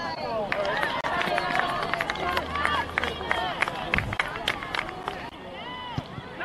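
Many voices shouting and calling out across an open soccer field during play, none of them clear enough to make out words, with scattered short clicks among them.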